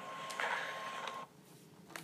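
A single steady electronic tone over faint hiss, cutting off about a second and a quarter in, followed by near silence.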